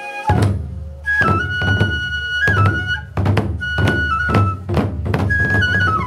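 Hōin kagura accompaniment: a transverse flute plays a held melody that steps between a few notes, over strokes on two large barrel drums (taiko). The drums come in about a third of a second in with a deep boom, then strike unevenly, roughly one or two strokes a second.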